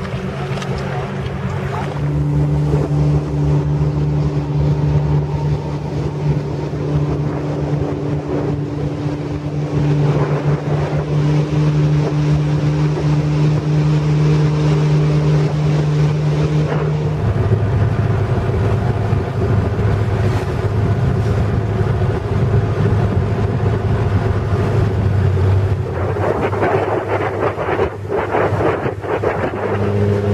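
Motorboat engine running steadily at speed, with wind buffeting the microphone and water rushing past the hull. About seventeen seconds in, the engine note drops to a lower pitch.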